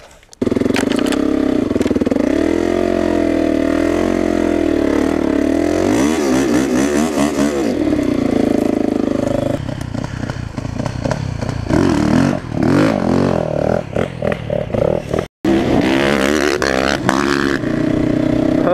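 Dirt bike engine running loud, its pitch wavering up and down as it is revved, with clattering in the middle stretch. A brief dropout comes near the end, then an engine runs steadily again from a quad.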